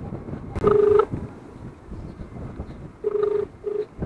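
Mobile phone ringback tone heard through the phone's speaker while an outgoing call waits to be answered: a short steady beep about half a second in, then a quick pair of beeps near the end.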